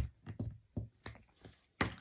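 A string of about seven light, sharp taps and clicks, with quiet between them, from paint supplies and a brush being handled and set down on a tabletop.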